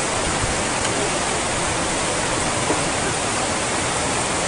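Steady, even rushing noise with no breaks or strokes, the kind made by fast water or by wind.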